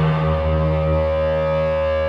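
Electric guitar through an amplifier holding one chord, which rings steadily with no new strikes.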